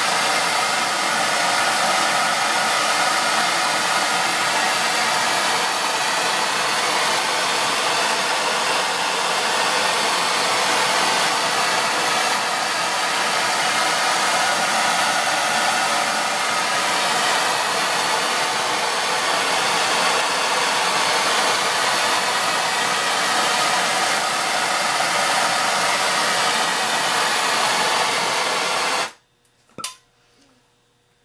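Self-igniting handheld gas torch burning with a steady hiss as it heats a copper ground wire, then shut off suddenly about a second before the end.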